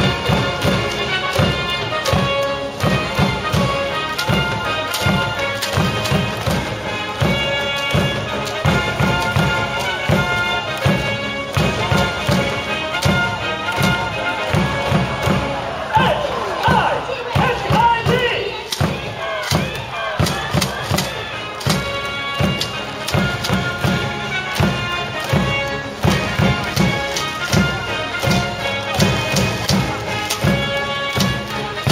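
Baseball cheering section playing a batter's cheer song: a drum beating steadily, about two strokes a second, under a trumpet-like horn melody, with the crowd chanting along. From about 16 to 19 s the horn thins out and the crowd's voices come forward.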